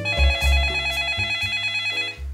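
Telephone ringing: a fast-pulsing electronic ring of several high tones together, which stops near the end.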